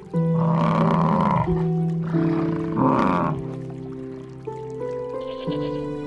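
American bison giving two long, rough grunting bellows about two seconds apart, over background music of sustained notes.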